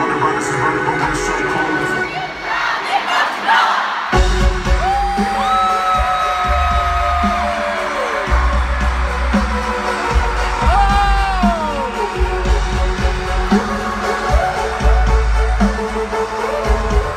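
Live band music through an arena sound system, recorded from the stands. It is thinner for the first few seconds, then a heavy bass beat drops in suddenly about four seconds in, with long sliding tones over it that rise, hold and fall.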